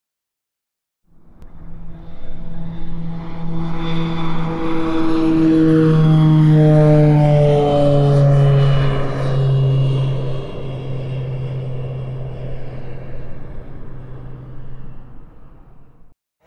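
Intro sound effect of a droning engine passing by, like an aircraft flying over. It swells to its loudest around the middle with its pitch falling steadily, then fades out shortly before the end.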